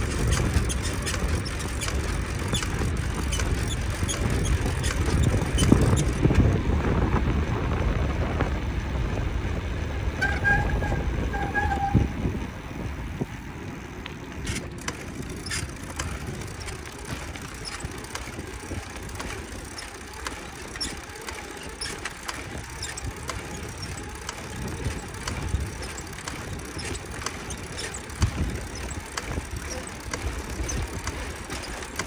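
Bicycle riding heard from a handlebar-mounted camera: wind rumbling on the microphone, heavy for the first dozen seconds and then easing, with frequent small clicks and rattles of the bike and mount over the pavement. Two short squeaks sound around ten to twelve seconds in.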